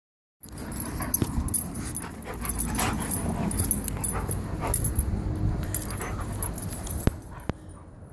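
Two Airedale terriers playing together at close range, with dog vocal sounds and the noise of their romping; two sharp clicks near the end.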